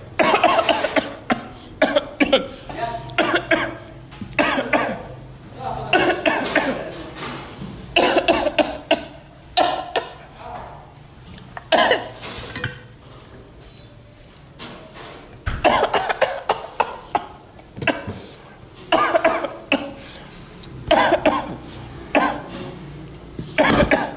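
A person coughing over and over, in short loud fits every second or two, with a quieter pause about two thirds of the way through.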